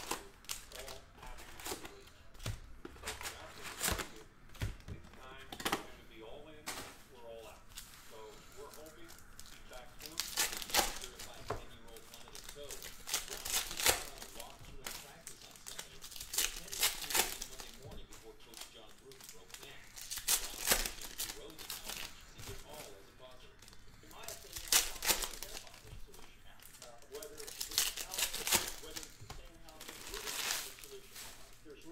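Foil wrappers of Panini Donruss football card packs crinkling and tearing as the packs are ripped open, in repeated bursts every three to four seconds, with cards handled in between.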